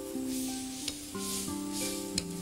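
Thin Chinese egg noodles boiling hard in a wok of water, a steady bubbling hiss under background music of held notes. Two light clicks come about a second apart.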